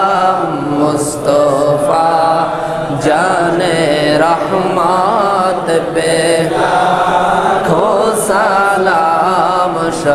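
A congregation of men chanting together in unison, a devotional salam to the Prophet Muhammad, sung as one continuous melodic line.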